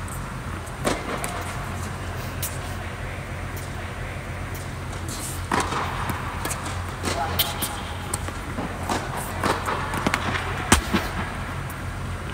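Tennis balls struck by racquets during a doubles point, a flat serve and then a rally, as a series of sharp hits a second or two apart, the loudest near the end, over a steady low hum.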